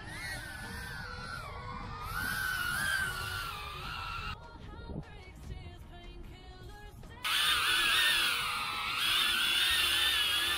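Brushless motors and propellers of a small cinewhoop FPV quadcopter whining, the pitch rising and falling with throttle. For about three seconds in the middle the whine gives way to short stepped tones. A louder, higher whine comes back suddenly about seven seconds in.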